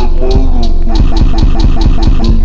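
Slowed, chopped-and-screwed trap music with heavy deep 808 bass. From about a second in, a short chunk repeats in a rapid stutter of about five hits a second.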